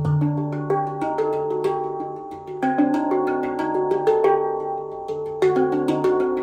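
Stainless steel handpan tuned to D Hijaz, played with the fingers: quick strikes on the tone fields give ringing, overlapping metallic notes in a Middle Eastern-sounding scale over a sustained low note. Stronger accents come about two and a half seconds in and again near the end.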